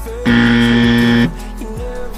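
A buzzer sounds once for about a second over background music with a steady beat, marking that the three-minute timer has run out.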